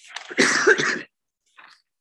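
A man coughs once into a microphone, a short hard cough about half a second long, starting about half a second in.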